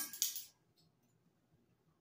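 Brief metallic clinking and jingling of small metal measuring spoons, just at the start.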